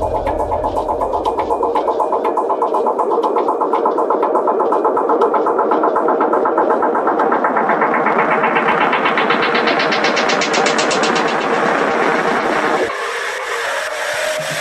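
Build-up in a house/techno track with the bass and kick pulled out: a rising filter sweep climbs steadily over about ten seconds above a fast, even rhythm, then cuts off suddenly near the end, leaving a thinner passage just before the beat returns.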